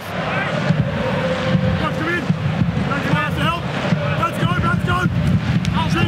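Football stadium crowd: a steady din of many voices, with scattered individual shouts rising above it.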